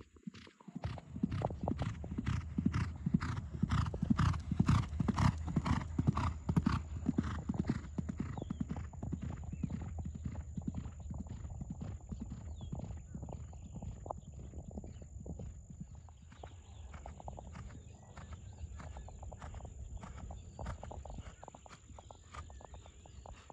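A horse's hoofbeats in a steady, even rhythm, loudest in the first third and fainter after.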